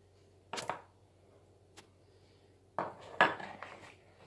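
A spoon knocking and scraping against a plastic mixing bowl while egg yolks are handled: a short clatter about half a second in, then a longer run of knocks and rattles near the end.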